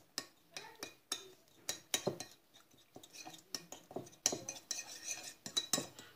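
A metal spoon stirring a sauce in a ceramic bowl, clinking and scraping against the bowl in quick, irregular strokes.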